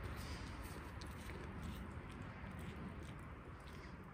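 Faint outdoor background hush with a few soft, small ticks; no distinct sound stands out.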